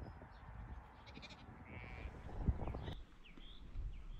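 Sheep bleating, a short call about a second in, over a low rumbling outdoor background. About three seconds in the sound cuts to a quieter background with a few short chirps.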